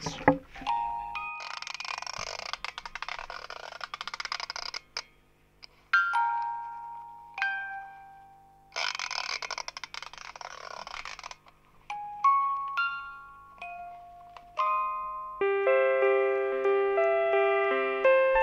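Small hand-cranked paper-strip music box playing single chiming notes that ring and die away, with two stretches of scratchy, rustling noise between them. From about fifteen seconds in, a small electronic instrument plays sustained, layered chords.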